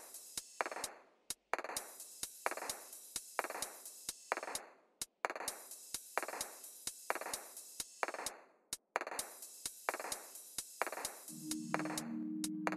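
Background electronic music with a steady beat of swishing drum hits and sharp clicks, a little under two hits a second, with a few brief drop-outs.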